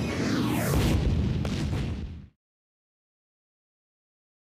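A loud explosion blast rumbling against a concrete wall, with a sharp crack about one and a half seconds in. It cuts off abruptly just past two seconds into dead silence.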